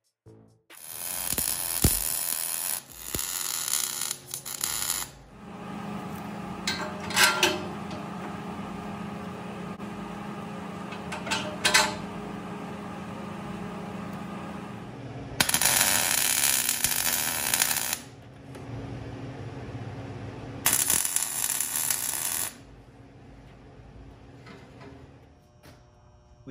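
Shop metalwork: a twist drill on a milling machine boring through a steel axle, with a steady motor hum through the middle, then welding heard as two crackling bursts of a couple of seconds each.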